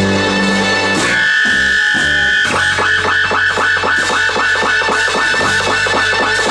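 Live rock band playing an instrumental passage with electric bass and a Roland Juno synthesizer. A high note is held from about a second in, then gives way to a fast, even run of repeated notes, about six a second.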